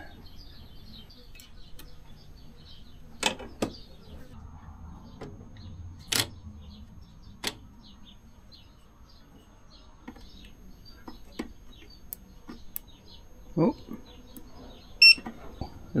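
A few sharp clicks of connectors and parts being handled inside an opened EcoFlow Delta Max portable power station. About a second before the end comes a short electronic beep, the loudest sound, as the unit powers back on after refusing to turn on.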